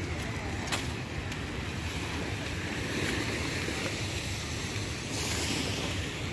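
Sea washing on a beach under wind buffeting the phone microphone, as a steady rushing noise with a low rumble. There is one brief click about a second in.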